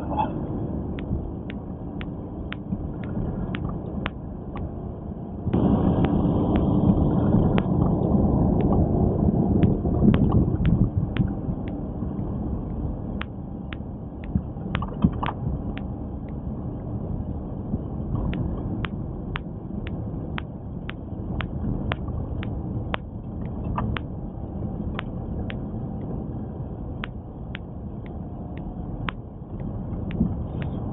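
Road noise heard from inside a car's cabin as it drives slowly over a snow- and ice-covered road: a steady low rumble from the tyres and car, with light, regular ticking about two to three times a second. The rumble gets louder about five seconds in and stays up for roughly five seconds before settling back.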